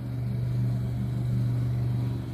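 Lawnmower engine running steadily in the background, a low, even hum.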